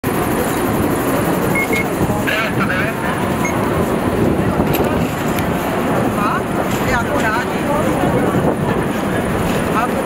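Busy city street ambience: a steady mix of people's voices chattering and traffic noise.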